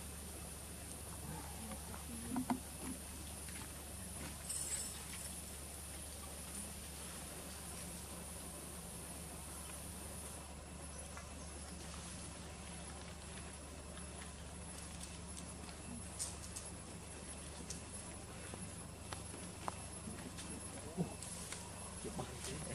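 Quiet outdoor background: a steady low hum and a thin, high, steady whine. A few faint short sounds break it, about two and a half seconds in and again near the end.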